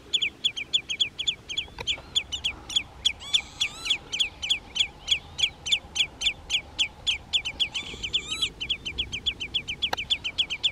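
A wader calling over and over: a fast, steady run of short, sharp notes, about four a second, with another bird's higher calls briefly over it twice.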